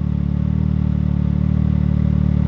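Can-Am Maverick X3's turbocharged three-cylinder engine idling steadily with a low, even hum, heard from inside the cab.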